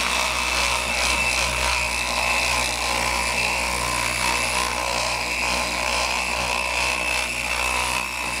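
Electric buffer with a foam pad running steadily against a painted motorcycle fender, polishing the clear coat: an even motor whine that does not change in pitch.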